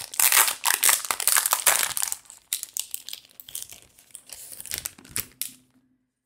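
Clear plastic packaging bag crinkling as it is handled and opened to take out a clear plastic zipper case. The crinkling is dense and loud for the first two seconds, then thins to scattered crackles and clicks.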